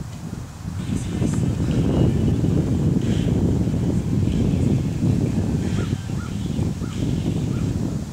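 Wind buffeting the camera's microphone: a loud low rumble that rises and falls with the gusts.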